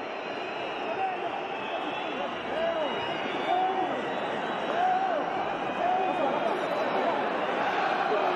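Football stadium crowd whistling over a steady din of voices, with long rising-and-falling calls through it.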